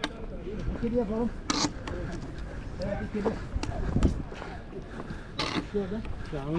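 Men's voices talking among a walking group, in short snatches, with a few brief rustling noises and clicks.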